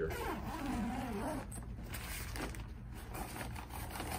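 Zipper on the outside compartment of a Babolat Pure Drive tennis racket bag being pulled open, a continuous rasp of the nylon bag's zip.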